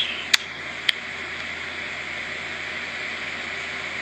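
Steady low hiss of room noise, with two short sharp clicks in the first second.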